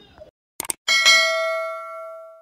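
Subscribe-button animation sound effect: two quick clicks, then a bell ding that rings on and fades away slowly.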